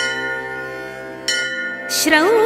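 A bell struck at the start and again about a second and a quarter in, each stroke ringing on and slowly fading, in the pause between verses of a chanted Sanskrit hymn.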